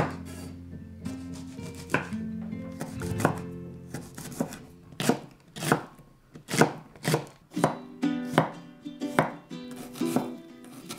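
Chef's knife chopping chillies on a wooden cutting board: a run of sharp knife strikes, sparse at first, then coming faster, about two a second, in the second half.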